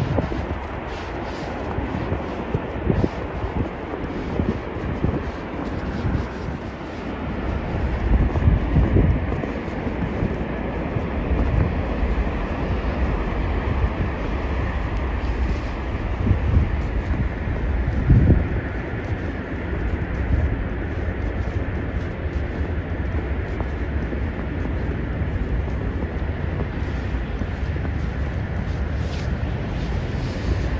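Wind buffeting the microphone over a steady low outdoor rumble, swelling and easing in gusts, with faint crunching footsteps in snow.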